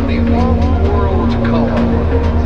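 Dark acid-techno track: a pulsing bass and a steady low drone under a gliding, bending synth line, with percussion hits about twice a second.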